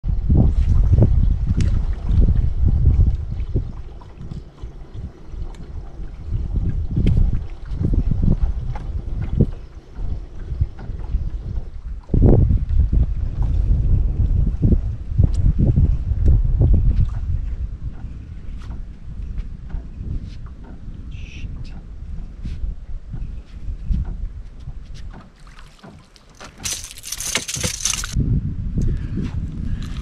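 Wind buffeting the microphone as a loud, uneven low rumble on an open boat deck, with scattered clicks and knocks. There is a brief loud hiss about two seconds before the end.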